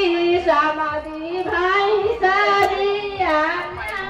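A woman's high voice singing a Bhojpuri wedding folk song, with long held notes that bend and waver.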